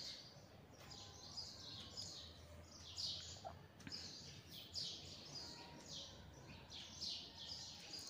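Faint small birds chirping over and over, several short high chirps a second.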